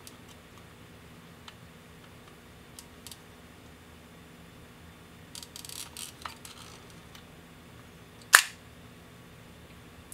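Ihagee Exakta VxIIb's focal-plane shutter releasing once with a single sharp snap about eight seconds in, on the T setting, where it opens and stays open. Before it come faint clicks and handling noise from the camera body.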